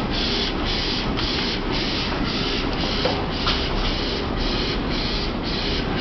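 Flatbed inkjet printer running, a hiss that pulses evenly about twice a second over a low hum.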